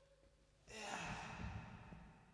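A faint breath out, starting a little under a second in and fading away over about a second.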